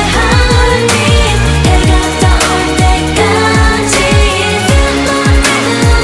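K-pop girl-group song: electronic dance-pop with repeated deep drum hits that slide down in pitch, layered synths and female sung vocals.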